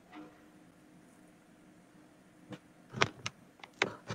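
A near-quiet stretch with a faint hum, then a handful of short clicks in the last second and a half.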